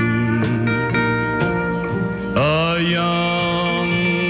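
Country band music with long held chords; about halfway through, the sound glides up into a new sustained chord.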